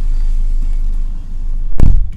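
Steady low rumble inside a car cabin, with one loud thump near the end.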